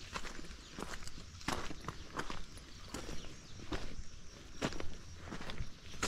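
Footsteps on a dirt road surfaced with loose stones, at a steady walking pace of about three steps every two seconds.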